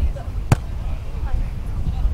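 A beach volleyball struck once with a sharp smack about half a second in, as a player bumps it in a forearm pass. There is a low wind rumble on the microphone.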